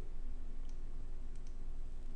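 A few faint computer mouse clicks, about three, as a code-completion list is scrolled. They sit over steady microphone hiss and a low hum.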